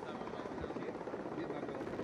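Steady running noise of a helicopter, its engines and rotor a continuous background wash, with faint voices under it.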